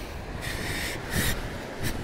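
Small surf washing on a sandy beach with wind rumbling on the microphone, and two short hissing rushes of noise about half a second and just over a second in.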